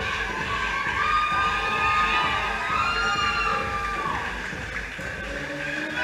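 A crowd of spectators cheering and shouting encouragement, with long held shouts in the middle.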